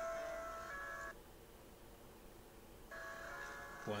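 Soft background music of held, sustained notes that change pitch. It drops out for about two seconds in the middle, then comes back, and a voice begins right at the end.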